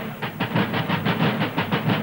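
A drum played in a rapid, even run of sharp strokes, about nine a second, over a low steady tone, as part of the film's score.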